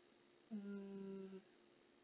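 A woman humming one steady, level note for about a second, starting about half a second in.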